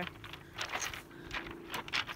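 Beach pebbles clicking and crunching: a handful of short, sharp stony clicks as stones shift and knock together.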